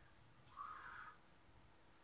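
Near silence: room tone, with one faint, short sound about half a second in.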